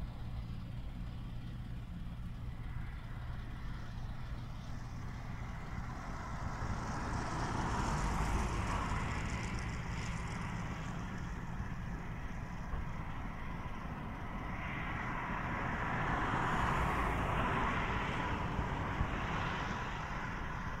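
Distant road traffic outdoors: a steady low rumble, with two passing vehicles swelling up and fading away, one around the middle and one near the end.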